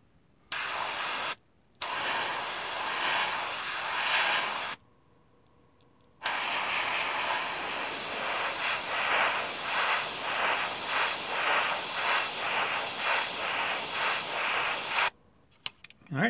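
AK Basic Line 0.3 mm airbrush hissing as it sprays paint in three bursts: a short one, one of about three seconds, and a long one of about nine seconds. The long burst takes on a regular flutter about three times a second in its second half.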